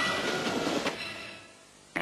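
Soundtrack of an animated BBC ident: a dense rattling noise with faint held tones, fading out between about one and one and a half seconds in.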